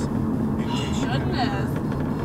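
Steady low drone of a moving car, its engine and tyre noise heard from inside the cabin.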